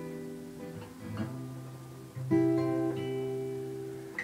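Solo acoustic guitar playing alone: a chord rings and fades, then a new chord is struck about halfway through and left to ring.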